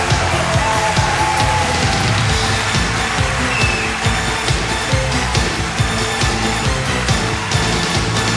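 Live pop-rock band playing an instrumental passage on a concert sound system: steady drum beat and bass under a full band mix.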